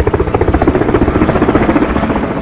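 Small handheld rotary tool running with its bit grinding into a PCL plastic grip block, a loud buzz with a rapid fluttering chatter.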